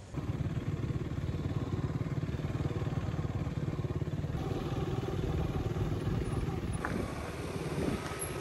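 Motor scooter running steadily on the road during a ride, a continuous low rumble.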